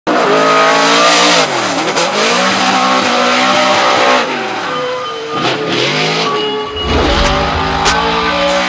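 Ford Mustang RTR Spec 5-D drift car's V8 engine at high revs, the revs dropping and climbing again three times through the drift, over a hiss of tyre noise.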